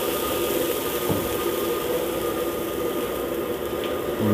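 Chilli sauce simmering in oil in a wok over a steady mechanical hum, with one light clink about a second in.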